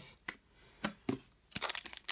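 Foil wrapper of a trading card pack crinkling as it is torn open. A dense crackle starts about one and a half seconds in, after a few faint clicks of handling.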